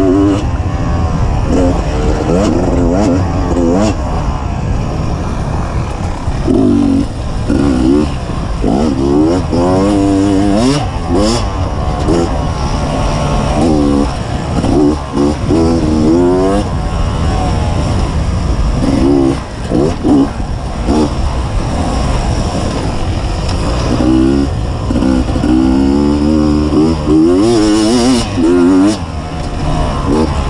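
2015 Beta 250RR's two-stroke single-cylinder engine under way on a trail, repeatedly revving up and backing off with the throttle, over a steady low rumble.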